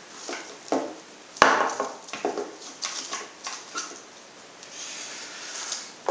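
Handling sounds of a small plastic helmet light and its strap on a table: a run of short knocks and clicks as it is put down and things are moved, the loudest about one and a half seconds in, then softer rubbing and rustling.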